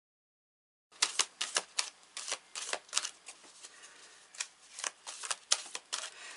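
A deck of tarot cards being shuffled by hand: a run of sharp card clicks and slaps, dense at first and more spaced out in the second half. It starts after about a second of dead silence.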